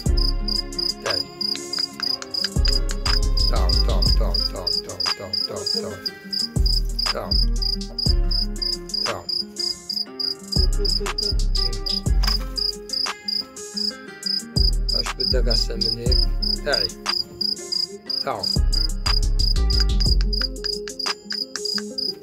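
A cricket chirping steadily in rapid, evenly spaced pulses, heard over music with a heavy, rhythmic bass line.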